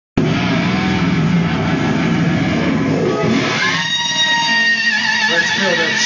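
Amplified electric guitar played live: a dense, loud wash of sound for the first three seconds or so, then a long held high note with a slight waver.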